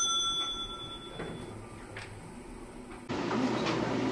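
The ringing tail of an edited drum-roll sound effect fading out, with a few faint clicks, then about three seconds in an abrupt cut to steady dining-room background noise.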